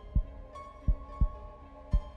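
Heartbeat sound effect: low paired lub-dub thumps, about one pair a second, over held background music tones.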